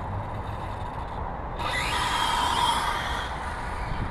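Radio-controlled 2WD Slash car with an electric motor driving on asphalt over a steady low rumble. About one and a half seconds in comes a sudden hissing burst of motor and tyre noise, the loudest part, which lasts about a second and a half.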